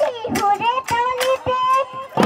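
A young girl singing a Bihu song, her voice sliding and wavering in pitch, over regular percussive beats of the accompaniment.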